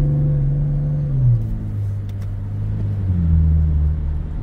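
Car engine and road noise heard from inside the cabin while driving, a steady low hum whose pitch steps down about a second in and again about three seconds in.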